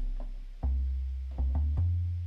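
Sampled electric bass played from a MIDI keyboard controller: a few deep notes, each struck and left to fade, a new one coming in about half a second in and twice more near the end, with light drum hits over them.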